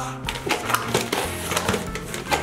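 Gift-wrapping paper crackling and rustling in quick irregular crinkles as a wrapped box is handled to be opened.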